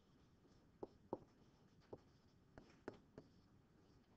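Faint, irregular taps and scrapes of a stylus writing on a pen tablet or interactive board: about seven short ticks over a few seconds in a quiet room.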